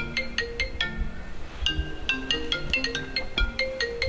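iPhone ringing with a melodic ringtone: a quick run of short, bell-like struck notes that repeats as the call goes unanswered.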